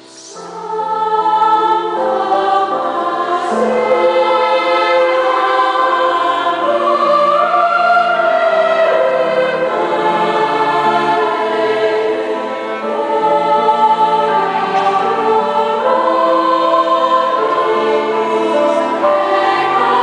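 Youth choir singing a slow piece in harmony, in long held chords, swelling up over the first second or two.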